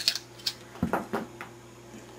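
Handling noise: a few light clicks and knocks of a metal electrolysis cell of stainless steel plates being picked up and moved, about six in the first second and a half, then only faint rustle.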